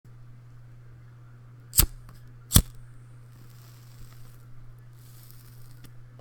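Two sharp clicks, a little under a second apart, over a steady low electrical hum and faint hiss.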